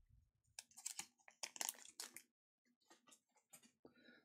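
Light clicks and crinkles of trading cards and a foil booster pack being handled, a busy run of small crackles in the first half and a few scattered ones near the end.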